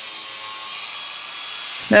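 Makita angle grinder running with a disc on galvanized steel box-section, grinding the zinc coating off so the rack can be TIG-welded to it: a steady high whine and hiss. It drops away for about a second in the middle and comes back near the end.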